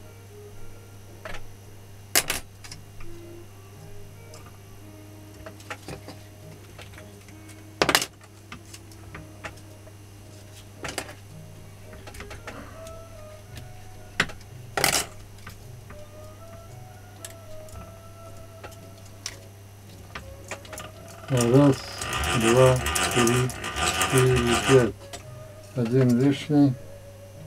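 Quiet hand-winding of copper magnet wire onto an angle-grinder armature, with a few sharp clicks, over a steady electrical hum. Near the end a man's voice comes in for a few seconds.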